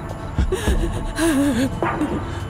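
A person sobbing: gasping breaths and a wavering, broken crying voice, over background music.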